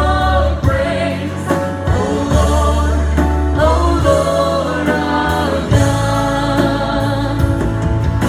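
Live worship band playing a song: a woman sings lead into a microphone over strummed acoustic guitar, drums and keyboard, with sustained low notes beneath.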